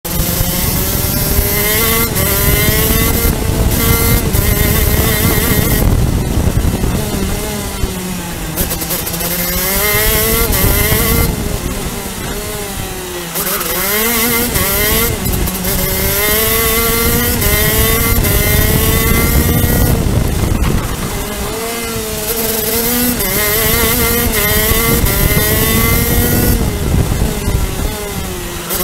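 A CRG Pro Shifter kart's 125cc two-stroke shifter engine, heard onboard at racing speed. Its pitch climbs through the gears and drops sharply under braking and downshifts into corners, dipping lowest about thirteen seconds in.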